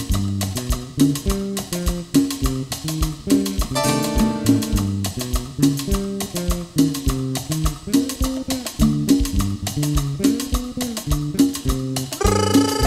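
Six-string electric bass playing a solo of quick, low notes over a steady cumbia beat on drums and hand percussion.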